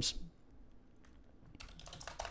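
Faint computer keyboard typing: a quick run of keystrokes near the end.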